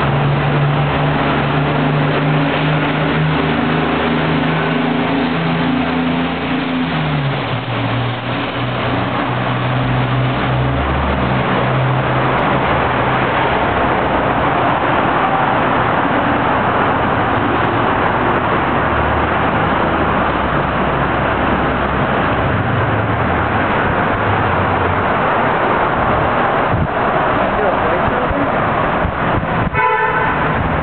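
City street traffic: a vehicle engine's steady hum for the first several seconds, dropping in pitch about seven seconds in, then the continuous wash of passing traffic.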